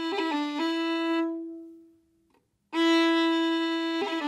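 Solo fiddle playing an Irish roll on one held note: a long note, a quick triplet ornament, then the long note again in one bow, dying away about halfway through. After a short silence, the long note starts again near the end.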